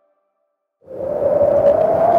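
Near silence for almost a second, then a loud electronic sound effect comes in suddenly and holds: a rushing noise with one steady tone running through it.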